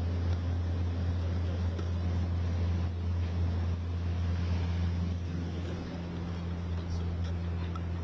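A steady low hum, unchanging throughout, with a faint noisy background that may include distant voices.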